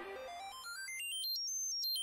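A soft sound effect of short beeping notes rising in quick steps, climbing steadily in pitch for about a second and a half, then stepping back down a little near the end.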